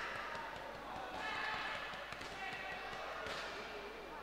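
Indistinct voices calling out around a boxing ring in a hall during a bout, with a sharp knock a little over three seconds in.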